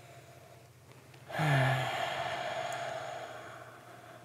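A man's short low hum running into a long breathy sigh that fades over about two seconds, as he noses a glass of whisky.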